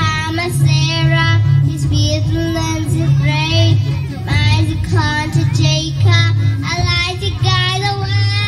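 A young girl singing solo into a handheld microphone over a recorded music backing track with a steady bass line, both amplified through stage speakers. Her held notes waver in pitch.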